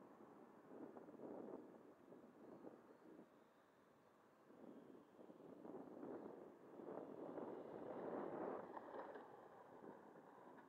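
Faint wind buffeting the microphone in uneven gusts, strongest over the second half.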